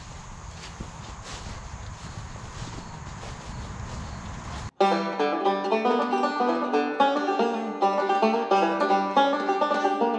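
Banjo-led bluegrass background music that comes in suddenly about halfway through. It follows a few seconds of low, rumbling outdoor noise.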